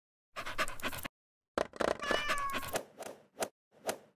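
Short cut-together clips of pet sounds: noisy bursts of a dog panting, and a drawn-out, slightly falling animal call about two seconds in, with dead silence between the clips.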